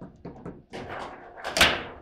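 Table football in play: rods sliding and plastic players knocking the ball in a run of quick clacks and rattles, with one loud sharp hit about one and a half seconds in.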